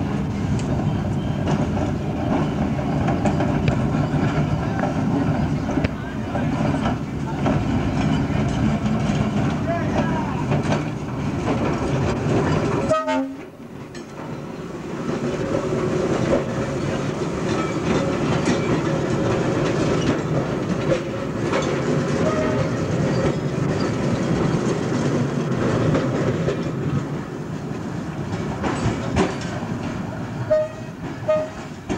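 Electric interurban railcar running on the line close by: a steady rumble of wheels on the rails and of the car itself. The sound drops away suddenly about thirteen seconds in and builds back up as a car passes at close range.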